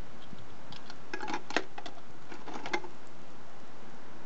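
Light clicks and clatters of hard plastic toys being rummaged in a plastic bucket, in two short clusters about a second in and again near the end, the sharpest click around the middle, over a steady background hiss.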